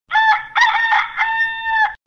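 Rooster crowing once, a cock-a-doodle-doo from a stock sound-effect recording: a short opening note, then a long held final note that cuts off suddenly near the end.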